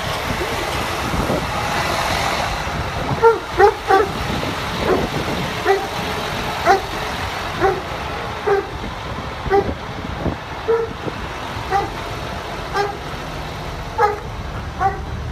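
Small auxiliary engine on a KBH hopper trailer running steadily, with short high squeaks repeating at uneven gaps of roughly one a second.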